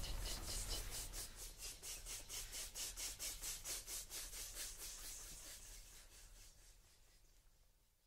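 Rhythmic scraping or rubbing noise, about four to five strokes a second, fading away over about five seconds into silence.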